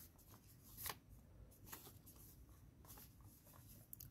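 Faint rustling and crinkling of folded origami paper being pressed and handled, with a slightly louder crinkle about a second in.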